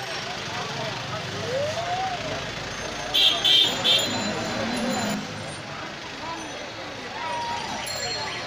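Busy street sidewalk: crowd voices over traffic noise, with a passing vehicle's shrill warning signal sounding three times in quick succession about three seconds in.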